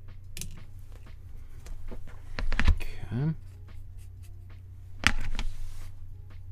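Clicks and knocks of small hard objects being handled, with a louder clatter about two and a half seconds in and another about five seconds in. A brief gliding squeak comes near the three-second mark, over a steady low hum.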